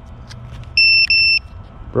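Two short electronic beeps at one high pitch, each about a third of a second, sounded back to back about a second in, over a faint steady background hiss.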